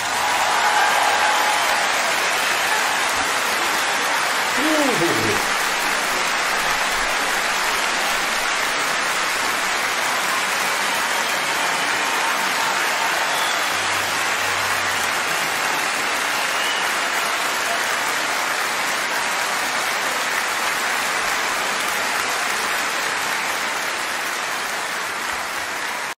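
Large concert audience applauding steadily at the close of an operatic duet, with one falling shout from the crowd about five seconds in.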